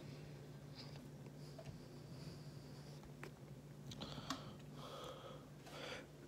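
Quiet room tone with a steady low hum, and a few faint clicks of plastic bottles being handled in a stainless steel sink.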